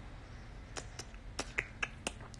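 Toddler sucking on a baby bottle's nipple: a string of small, irregular clicks and smacks, more of them in the second half.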